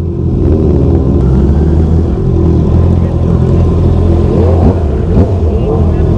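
Motorcycle engines idling steadily at a standstill, a low, even hum with no revving.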